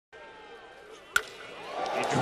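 A wooden baseball bat hitting a pitched ball: one sharp crack a little over a second in, over a murmuring stadium crowd that swells just afterward.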